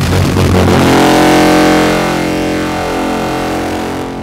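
The USS Yorktown's one-ton ship's whistle (foghorn), driven by about 130 to 140 psi of compressed air instead of steam, sounding one long, deep, very loud blast rich in overtones. It starts abruptly and eases off slightly after about two seconds.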